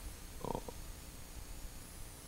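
A pause in a man's talk at a table microphone: low room noise, with one brief soft vocal sound, a hesitation or breath, about half a second in.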